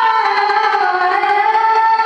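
A woman reciting the Qur'an in melodic chant, holding one long unbroken note. Its pitch sinks gently during the first second, then levels off.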